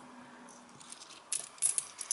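20p coins clinking against each other as they are picked up and gathered in the hand: a handful of short, sharp metallic clinks in the second half.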